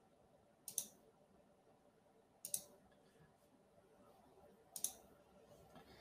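Three computer mouse clicks about two seconds apart, each a quick double tick of press and release, over near silence.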